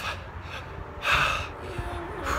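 A runner's heavy breath after a hard 800 m interval at 5K race pace: one loud gasping breath about a second in.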